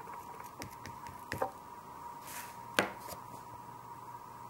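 Oil pastel sticks being handled and worked on paper: a few light clicks and taps, with a short scrape, and the sharpest tap a little after the middle.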